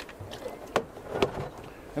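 Handling noise from black polythene (alkathene) hose and a plastic bucket: a few light knocks and clicks, the two loudest about half a second apart in the middle, over faint rustling.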